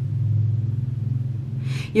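A steady low background hum, with a short breath drawn near the end.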